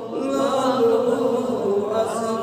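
Male voice singing a naat, an Islamic devotional chant, in long held notes that glide slowly in pitch.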